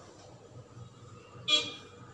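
Corn cutlets deep-frying in oil, sizzling faintly, cut across about one and a half seconds in by a single short, loud horn toot.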